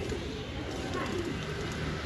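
Domestic pigeons cooing low and quietly.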